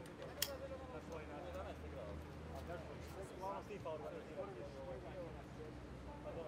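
People talking indistinctly, voices overlapping, with one sharp knock about half a second in.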